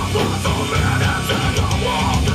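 Metalcore band playing live: loud distorted electric guitars and bass over a drum kit with regular cymbal strikes.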